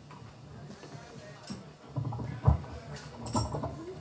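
Quiet live-venue room noise between songs: faint murmur from the crowd and stage, with a few knocks and clinks of handled equipment and one sharper thump about halfway through.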